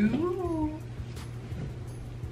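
A woman's brief wordless hum, rising then falling in pitch, in the first second, over a steady low hum.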